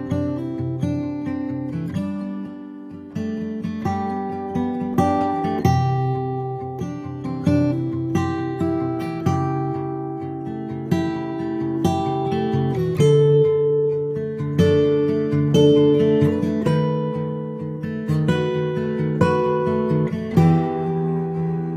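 Background music of acoustic guitar, plucked and strummed notes and chords following one another steadily.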